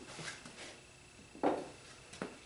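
Metal hand planes being handled on a wooden workbench: light clatter, then a sharp knock about one and a half seconds in as one is set down or picked up.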